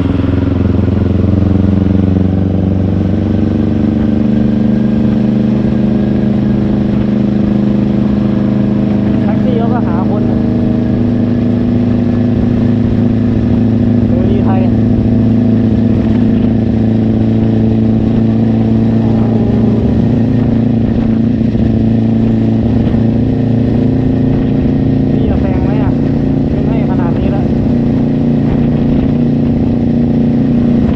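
Kawasaki Ninja 400 parallel-twin engine running steadily at cruising revs while riding, over a low rumble of wind and road noise.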